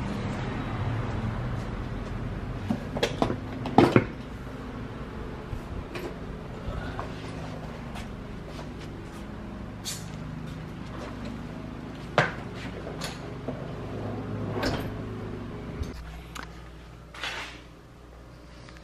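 A leather car seat being handled and lifted back into a car: scattered knocks and clunks of the seat frame against the car body, the loudest about four seconds in, over a low steady hum that stops near the end.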